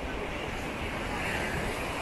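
Beach ambience: steady surf from breaking waves, with wind buffeting the microphone in an uneven low rumble.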